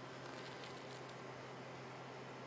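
Quiet room tone: a steady low hum under a faint even hiss, with no distinct events.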